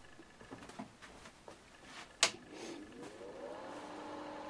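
Power toggle switch of an EIP 575 microwave frequency counter clicked on about two seconds in, followed by the instrument's cooling fan spinning up with a rising hum that levels off to a steady tone. The fan is quite noisy with the cover off.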